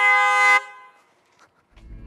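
Car horn sounded in one steady held blast that cuts off about half a second in, honking at a man standing in the car's path. After a moment of near silence, a low rumble comes up near the end.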